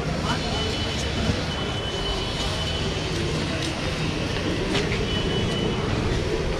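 Busy market-street noise: a steady rumble of traffic and bustle with indistinct voices of passers-by. A thin, high-pitched squeal sounds for a few seconds early on and again near the end.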